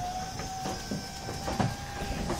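Electric garage door opener running as the sectional door travels closed: a steady motor whine over a low rumble, weakening in the second half.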